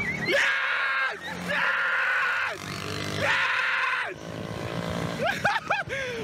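Excited high-pitched yelling and cheering: three long yells in the first four seconds, then shorter calls near the end, with a small side-by-side's engine faintly underneath.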